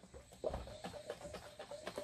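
Heavy cream sloshing inside a glass jar as it is shaken rapidly by hand, a quiet stream of short repeated sloshes and glugs.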